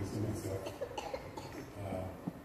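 A man's voice over a handheld microphone, in short, broken sounds rather than steady talk.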